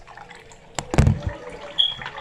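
Handling noise from a phone camera being moved and propped up: two sharp knocks close together about a second in, then a brief high squeak near the end.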